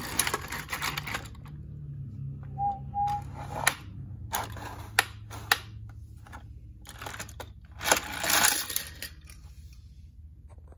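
A toy train engine being pushed by hand over plastic toy track and a turntable: irregular rattling and clicking of wheels and plastic parts, with a few sharp clicks in the middle and a longer clatter near the end. Two brief squeaks come a few seconds in.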